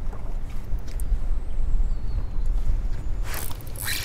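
Wind buffeting the microphone on an open boat, a steady, uneven low rumble. Near the end a sudden loud rush of noise comes in.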